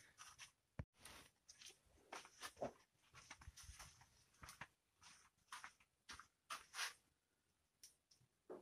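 Near silence broken by faint, scattered rustles and light clicks of handling, as a shoulder harness strap is adjusted and a cloth is rubbed over a brush cutter that is not running.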